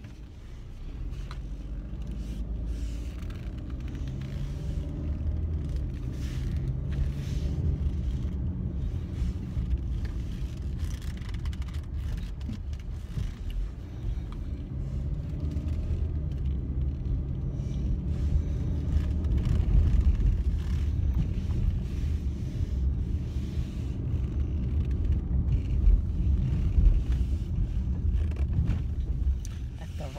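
Car cabin noise while driving: a steady low engine and road rumble that grows louder about a second in as the car gets under way, with the engine note rising and falling.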